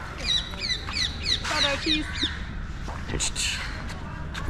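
A bird calling: a rapid series of about eight high chirps, each sliding downward, about four a second, lasting about two seconds.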